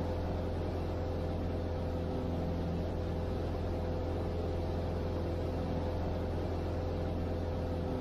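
Steady drone of a small single-engine Grumman light plane's piston engine heard in the cabin: an unchanging low hum with a faint steady whine over it.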